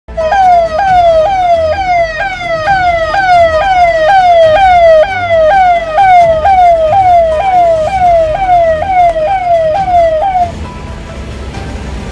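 Police vehicle's electronic siren, a fast repeating sweep that falls in pitch about twice a second, cutting off near the end.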